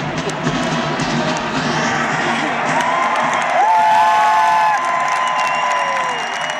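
A brass-and-drum military marching band's music dies away while a large stadium crowd cheers. From about halfway in, several long, steady whistles from the crowd ring out over the cheering.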